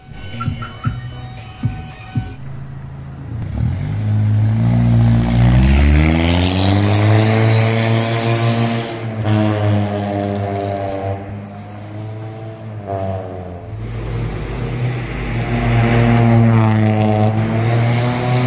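Honda Jazz GD3 hatchback's engine revving and pulling away, its pitch climbing, easing off, then climbing again near the end. A few short clicks come in the first two seconds.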